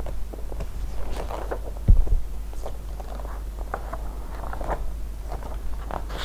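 Folding paper being handled close to the microphone: scattered crinkles and small clicks, with one low thump about two seconds in, over a steady low hum.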